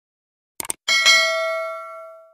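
Subscribe-animation sound effect: a couple of quick clicks, then a bright bell chime that rings out and fades over about a second.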